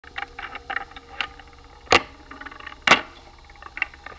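Sparse clicks and taps, with two louder sharp knocks about two and three seconds in, heard as the opening sounds of a recorded song.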